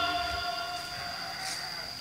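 Insects singing steadily in one high-pitched tone, while held music fades out during the first second.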